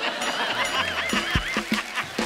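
Comic sound effect: a high warbling whistle-like tone, wobbling about four times a second, laid over background music with a low thump partway through.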